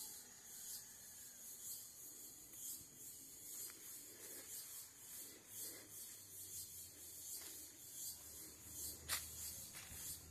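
Faint rustling and rubbing of footsteps over dry leaf litter and of the handheld phone, under a high, pulsing insect buzz.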